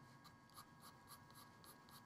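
Very faint graphite pencil strokes on drawing paper: short, quick scratches repeating about five times a second as hair strokes are laid down.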